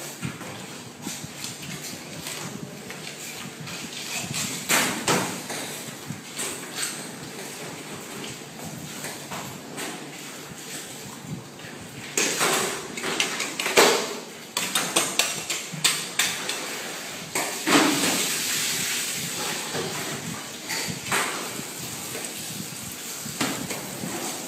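Irregular knocks and scraping from a knife cutting a fish, busier and noisier in the second half.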